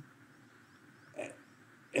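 Near silence of room tone, broken about a second in by one short questioning "huh?" from a man.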